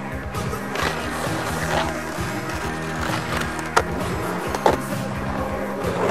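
Skateboard wheels rolling on asphalt, with two sharp clacks of the board a little past the middle, under background music.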